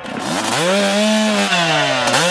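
Small two-stroke engine revving: it climbs steeply to high revs in the first half second, holds there, then eases back slightly near the end.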